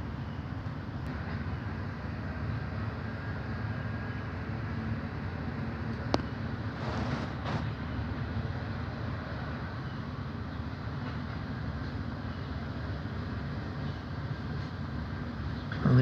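Steady low rumble of running machinery, with a single sharp click about six seconds in and a short hiss just after.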